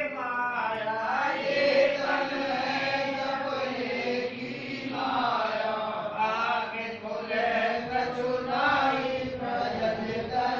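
Hindu devotional bhajan sung in a chanting style, voices running continuously with a rising and falling melody.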